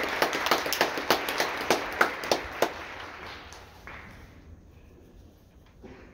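Audience applause with loud, evenly spaced claps from someone close by, dying away about three to four seconds in. A quiet hall follows, with a faint tap or two.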